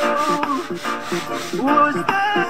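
A song with singing plays over a stiff brush scrubbing a soapy wet carpet in repeated rubbing strokes.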